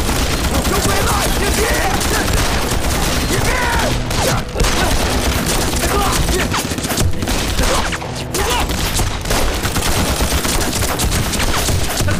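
Heavy, continuous gunfire from many rifles at once: overlapping shots with no break, a sustained battle fusillade.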